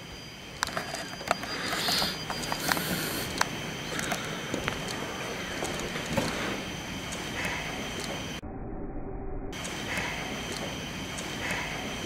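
Footsteps and handling noise from a handheld camcorder being carried along a corridor: irregular light clicks and knocks over a steady hiss with a faint high whine. The hiss cuts out briefly about eight seconds in.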